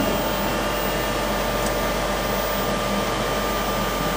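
Steady whirring hum of an automatic book-scanning machine's suction and blower fans, an even rush of air with a faint steady tone over it.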